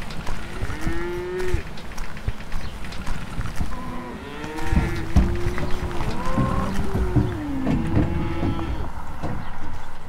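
Several cattle mooing: one long call about a second in, then a run of overlapping long calls from about four to nine seconds, with some low thumps among them.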